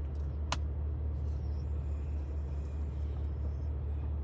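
Steady low rumble of a car's engine running while stopped, heard from inside the cabin, with a single sharp click about half a second in.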